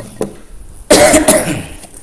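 Two short knocks, then one loud cough from a man about a second in.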